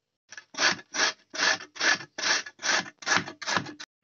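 Carrots being grated on the coarse side of a metal box grater: about nine even scraping strokes, a little more than two a second.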